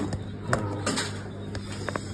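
Red plastic takeaway container lid being pried off a biryani tub, with a few sharp plastic clicks and knocks: one about half a second in, a couple around one second, and two near the end.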